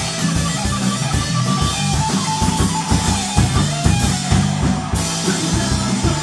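Live rock band playing: electric guitar, bass guitar and drum kit, with a steady pulsing rhythm in the bass and drums and held guitar notes above it.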